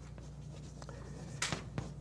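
Chalk writing on a chalkboard: faint scratching strokes, with two sharper, louder strokes in the last half second, over a steady low hum.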